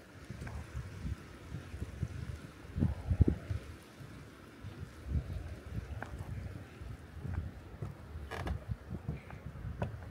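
Wind buffeting the microphone in uneven low gusts, with a few faint clicks and one sharper tick near the end.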